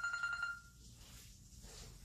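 A steady, high electronic tone, like a phone's ring or alert, holding and then fading out just under a second in, leaving quiet room tone.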